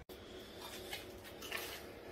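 Faint room tone with no distinct event, broken by a momentary dropout right at the start.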